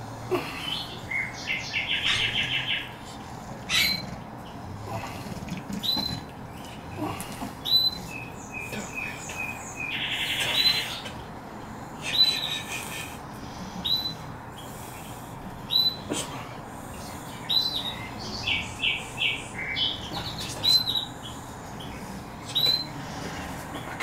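A bird chirping, with short high calls every second or two and a few rapid buzzy trills mixed in.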